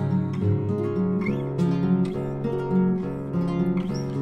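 Acoustic guitar playing plucked notes in an instrumental passage of a song, with no singing.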